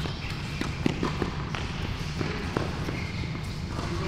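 Tennis balls being hit with rackets and bouncing on an indoor hard court: a dozen or so scattered short knocks at irregular spacing, over a steady low hum.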